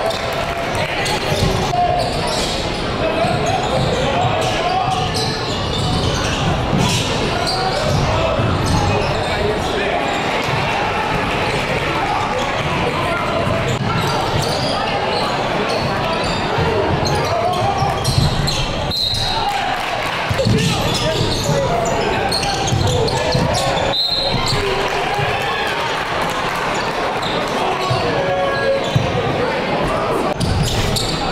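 Live basketball game in a gym: a steady murmur of crowd voices, with a basketball bouncing on the hardwood floor over and over.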